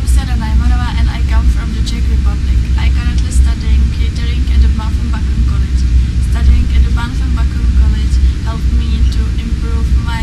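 A young woman speaking to the camera over a loud, steady low hum.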